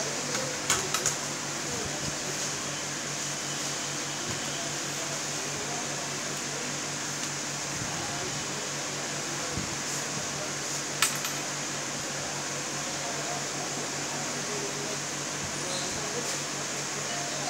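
A few sharp clicks from a selfie stick being handled: three in quick succession about a second in and one more about eleven seconds in, over a steady background hum.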